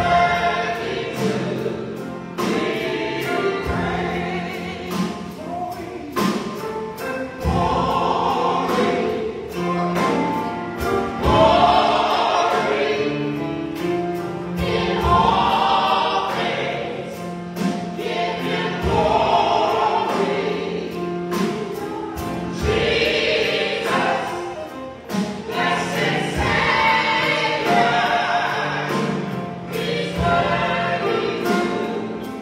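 Live gospel song: a small group of voices singing together, backed by a drum kit keeping a steady beat, with keyboard and guitar.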